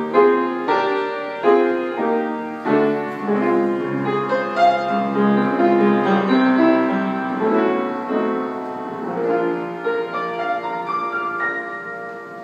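Console piano being played: chords and a melody, notes struck and ringing, dying away near the end.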